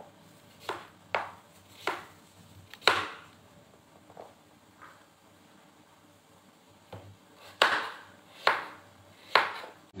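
Kitchen knife chopping raw yellow pumpkin on a plastic cutting board: a few sharp knocks of the blade against the board in the first three seconds, a pause, then three more near the end.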